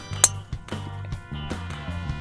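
A golf driver striking the ball off the tee: one sharp click about a quarter of a second in, over background music with guitar.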